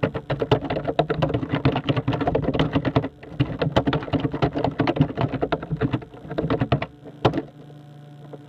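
Rapid, uneven clicking in quick runs over a steady low hum. The clicks pause briefly about three seconds in and stop near the end.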